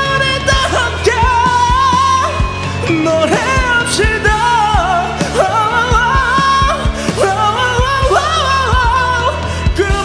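A man belting a Korean ballad with wavering vibrato and quick runs, sung over a karaoke backing track with bass and drums.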